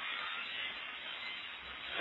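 Steady, even hiss of the recording's background noise, with no speech.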